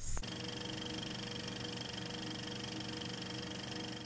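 A steady, even drone of several held tones with a faint buzzing texture. It starts suddenly just after the start and cuts off abruptly at the end.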